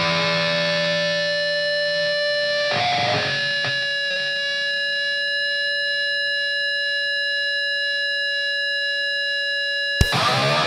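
Distorted electric guitar in a grindcore/powerviolence recording, holding a chord that rings out; about three seconds in it shifts to a new sustained chord that rings on steadily.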